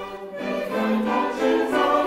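Mixed choir singing held chords of a Renaissance–early-Baroque madrigal, swelling in about half a second in after a short lull.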